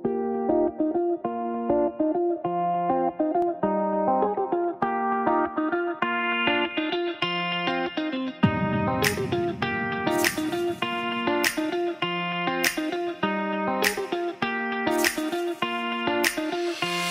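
Background music: a plucked guitar melody of short repeated notes, joined about halfway through by a deep bass swell and regular sharp percussive hits.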